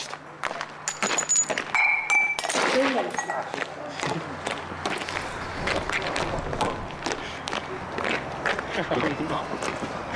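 Sharp clinks and knocks of china mugs in the first couple of seconds, two of them ringing briefly, then a scuffling clatter under low voices, with a laugh at the end.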